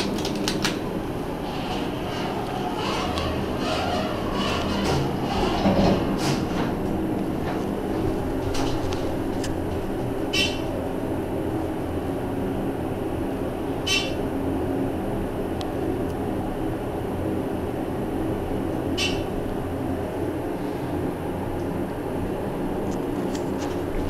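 Dover hydraulic elevator car travelling down, heard from inside the cab: a steady hum and rumble, with rattling in the first few seconds. Three short sharp ticks come several seconds apart in the middle of the ride.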